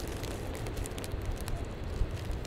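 Wind buffeting the microphone in a steady low rumble, with light crackling handling noise, many small clicks, over it.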